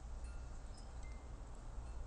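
Faint, scattered high chime-like tones, each brief and at a steady pitch, over a low steady rumble.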